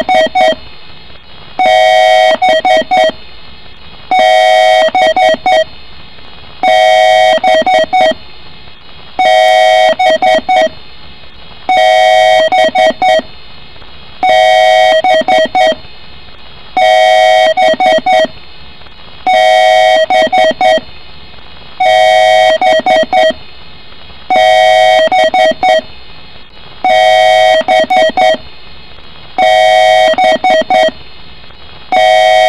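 A loud looping pattern of electronic tones, repeating about every two and a half seconds: a held chord of steady beeps about a second long, then four or five quick blips.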